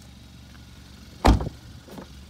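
A car door shutting: one heavy thump about a second in, over a low steady hum.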